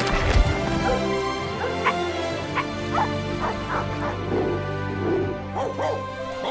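A rapid series of short dog barks and yips from film soundtracks over sustained background music, with a sudden loud burst right at the start.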